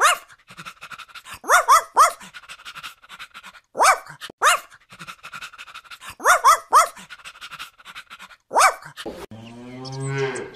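A dog barking: about ten short barks, some in quick runs of three. Near the end a cow begins to moo.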